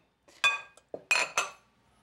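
Glass bowls clinking as a large glass bowl is set down against a smaller one: two ringing clinks, the second just after a second in, then a lighter knock.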